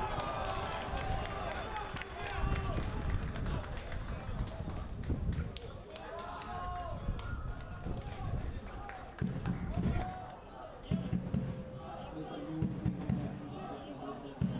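Men's voices shouting and calling out in a goal celebration, with bursts of low thudding rumble.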